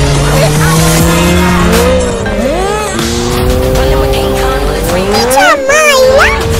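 Motorcycle engines running at speed with a steady pitch, and a whining sweep that rises and falls twice, around the middle and again near the end, over background music.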